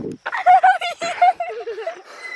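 A girl's high-pitched voice laughing and squealing, wavering in pitch, then dropping lower about halfway through.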